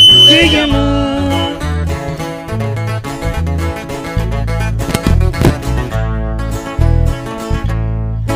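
Live sierreño band music: a sung line trails off about a second in, then an instrumental break of picked and strummed guitars over a steady, bouncing bass line.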